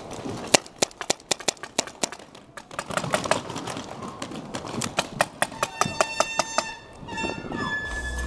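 Paintball marker shots, a run of sharp, irregular cracks, some in quick strings, over about five seconds. Near the end, a pulsing sound of several high steady pitches repeats in an even pattern.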